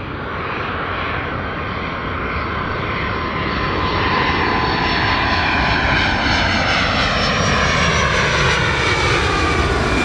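Twin turbofan engines of a USAF C-32B, a Boeing 757 jet, on landing approach, growing louder as the aircraft closes in. From about halfway through, its whine sweeps lower in pitch as it passes.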